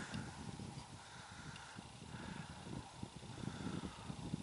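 Wind buffeting the microphone: a fairly quiet, irregular low rumble over faint outdoor background noise.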